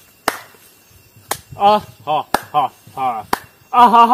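Finger snaps, four sharp ones about a second apart, keeping a beat. A man's voice in short syllables fills the gaps between the later snaps, and a long drawn-out vocal note starts near the end.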